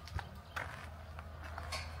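A few irregular footsteps on a gritty concrete floor, short sharp knocks over a low steady hum.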